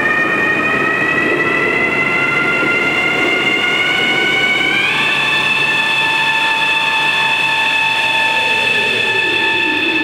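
Electronic science-fiction sound effect of a starship's drive surging to great power: several high tones rise slowly together, step up sharply about five seconds in and then hold steady, while a lower tone starts falling near the end.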